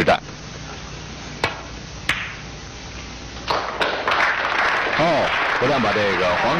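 Snooker balls clicking: the cue striking the cue ball and, about half a second later, the cue ball hitting an object ball. Another knock follows about three and a half seconds in, then audience applause swells and carries on.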